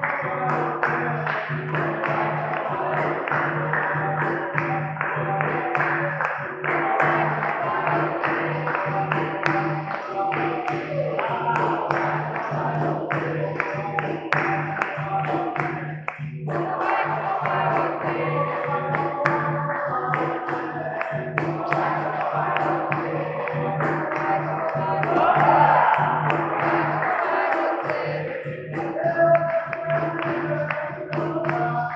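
Capoeira roda music: berimbaus and a hand drum keeping a steady rhythm, with the circle hand-clapping and singing along. It swells louder for a moment near the end.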